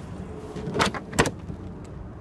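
Handling in a car's trunk: a short scrape about three-quarters of a second in, then a sharp click just after a second.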